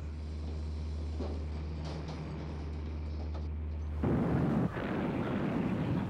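Dubbed sound of naval gunfire: a steady low rumble, then about four seconds in a sudden, louder rush of noise like a heavy gun blast or shell burst that carries on.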